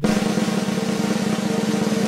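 A fast, even drum roll over a low held note: a suspense roll leading into an announcement.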